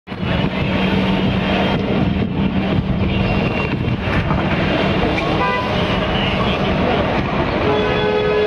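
Busy road traffic with engines running, and a short vehicle horn toot about five and a half seconds in.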